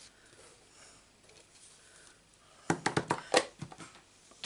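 Hands handling paper-crafting supplies on a work mat: a soft paper rustle, then a quick run of sharp clicks and knocks near the end.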